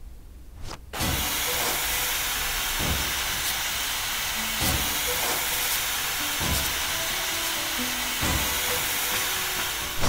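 A loud, steady hiss of rushing air starts abruptly about a second in and holds. Under it, music plays with a soft low thump about every two seconds.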